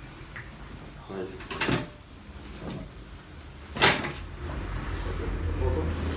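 Chiropractic adjustment on a padded treatment table: a few short knocks, the loudest about four seconds in.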